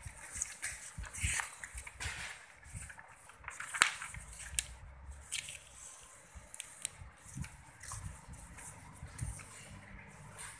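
Pencil scratching on paper as numbers are written on a worksheet, in irregular short strokes, with paper rustling as sheets are shifted. A sharp click, the loudest sound, comes a little under four seconds in.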